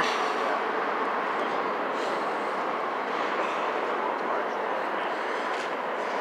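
Steady, even outdoor background rush with no distinct events, typical of city traffic and ambient noise.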